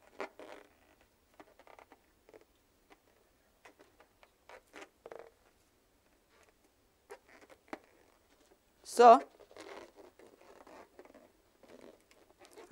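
Faint, short, irregular rubbing and scratching of a small rubber balloon being handled between the fingers, with a single spoken word about nine seconds in.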